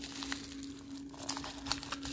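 Crinkling of a padded bubble-mailer scrap handled in the fingers, a scatter of small crackles.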